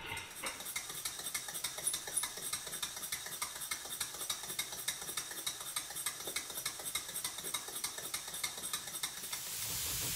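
Stuart S50 model steam engine running on compressed air, its exhaust giving a quick, even beat of puffs. Near the end a rising hiss takes over.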